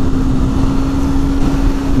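Wind noise on the microphone over the KTM Duke 390's single-cylinder engine cruising steadily at about 60 mph, with a constant hum. The wind is louder than the quiet stock exhaust.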